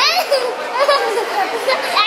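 Young children squealing and shouting playfully, with a high sliding squeal at the start and more high-pitched vocal cries after it.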